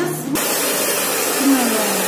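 Hair dryer running with a loud, steady hiss that starts abruptly about a third of a second in.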